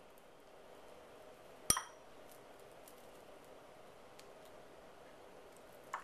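Faint room tone, broken once, about two seconds in, by a single sharp clink that rings briefly.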